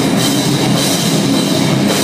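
Metalcore band playing live, loud: a drum kit with crashing cymbals driving under electric guitar in a dense, unbroken wall of sound.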